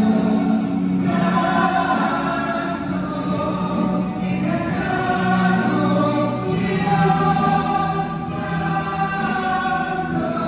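Many voices singing a Christian worship song together, with long held notes.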